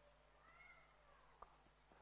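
Near silence, room tone only. A very faint short call that rises and falls in pitch runs through the first second, and a faint click comes about a second and a half in.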